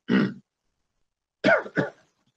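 A man coughing: one cough at the start, then two more in quick succession about a second and a half in.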